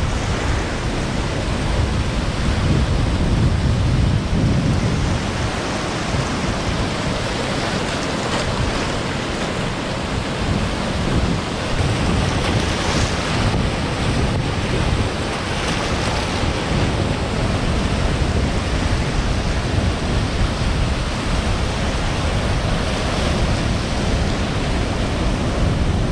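Ocean waves breaking and washing in over shoreline rocks, a continuous rush of surf that swells now and then. Wind on the microphone adds a low, uneven rumble.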